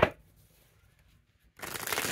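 A sharp tap, then a tarot deck being shuffled by hand: a dense papery rush of cards starting about one and a half seconds in.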